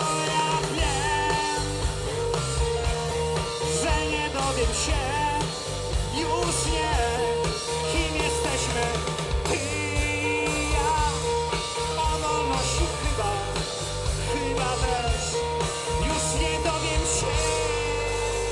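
Live rock band playing: a male singer's voice over electric guitars, bass and drums, continuing without a break.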